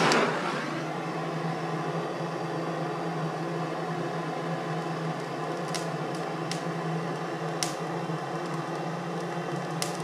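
Handheld propane torch lit with one sharp click, then burning with a steady, even hiss as its flame is held to kindling in the stove's firebox. A few light ticks come through in the second half as the kindling starts to catch.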